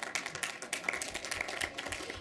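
Brief applause from several people: a light, rapid patter of hand claps.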